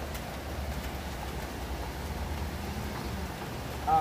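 Steady rain falling: an even hiss over a low rumble, with no distinct events.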